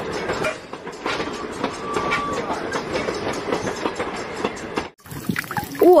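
Train running along the track: a steady rattle with rapid clicks of wheels over the rails, cut off abruptly about five seconds in.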